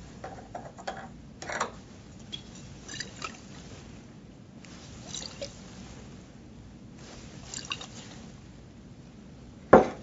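Water sloshing inside a stoppered glass volumetric flask as it is shaken and inverted to mix the diluted solution, in short faint swishes every second or two. A brief louder sound comes just before the end.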